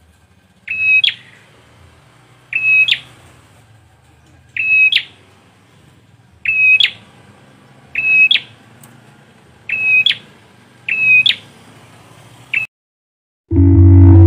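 A prenjak (prinia, also called ciblek) repeats a loud, shrill call about every one and a half to two seconds. Each call is a short, steady high note that ends in a quick upward flick. The calls stop suddenly near the end, and after a moment music begins.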